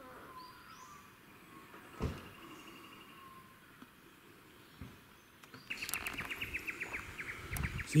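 Faint bush ambience with scattered bird calls and a single thump about two seconds in, then a rapid, even run of high chirps, about ten a second, for the last two seconds.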